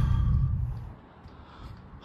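Low rumble of a car heard from inside the cabin, dying away within the first second and leaving faint, quiet background.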